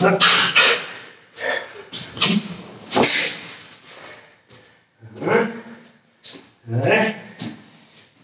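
A karateka's short, forceful grunts and exhalations, one with each strike of a shadowboxed combination, coming in quick succession for the first three seconds, then after a short pause again near the end.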